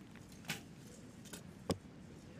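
Two short sharp clicks about a second apart, the second the louder, over a faint background: a recurve bow loosing an arrow and the arrow striking the target.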